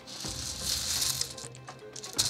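Game stones clicking and rattling against each other inside a cloth drawstring bag as a hand rummages through it to draw pieces, with the cloth rustling; the rattling dies down after about a second and a half.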